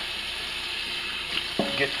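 Kitchen faucet running into a stainless steel sink: a steady hiss of water.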